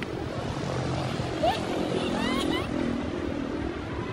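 Outdoor street ambience: a steady low rumble like distant traffic, with a few brief, faint voices rising in pitch near the middle.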